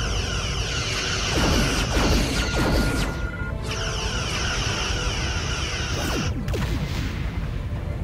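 Sci-fi space battle sound effects: two long, warbling energy-weapon beams, the second cutting off about six seconds in, with booms and a low rumble, over a dramatic music score.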